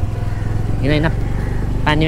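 Small scooter engine running steadily at low speed on a rough dirt road, a low even hum with a fast regular pulse. A person's voice cuts in briefly about a second in.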